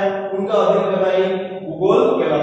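A man's voice in drawn-out, sing-song speech, holding long vowels, with a brief break near the end.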